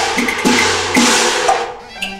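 Cantonese opera percussion accompanying the stage action: sharp wood-block clicks with crashing percussion strokes, one near the start, another about half a second in and another about a second in, fading away near the end.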